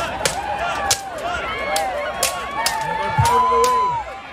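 Steel greatswords clashing against each other and on plate armor in a rapid exchange of sharp metallic strikes, about two or three a second. Spectators shout over it, with one long yell near the end.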